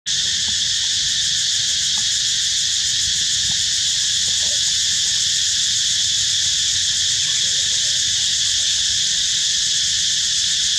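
A loud, steady chorus of insects: a continuous high-pitched shrill hiss that does not change.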